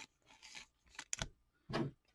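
Faint crinkling and scratching of a thin plastic card sleeve as a trading card is slid into it, in a few short scrapes.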